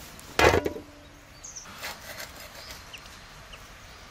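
A large metal tray is struck, making one sharp clatter about half a second in and ringing briefly after it. A few fainter knocks and scrapes follow about two seconds in.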